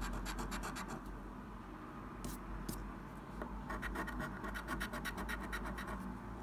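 A coin scratching the coating off a paper scratch card in rapid back-and-forth strokes, several a second. The scratching eases off for a couple of seconds in the middle with only a few single scrapes, then picks up briskly again.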